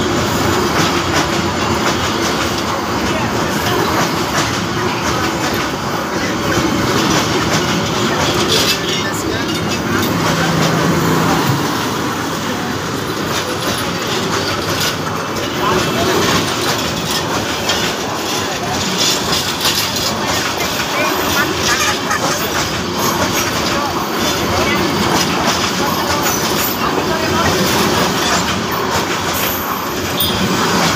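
Bangladesh Railway passenger coaches rolling past close by at speed: a steady loud rumble with the wheels clattering on the rails throughout.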